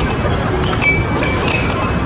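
Air hockey puck clacking against plastic mallets and the table rails in quick play: several sharp clicks at irregular intervals over a steady din of background noise.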